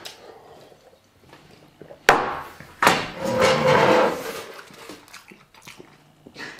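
A sharp knock about two seconds in, a glass set down on a wooden table. It is followed by a man's loud, drawn-out groan, the strain of having just finished a huge portion of very spicy food.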